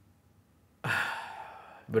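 A man sighing: one long breathy exhale that starts abruptly about a second in and fades away.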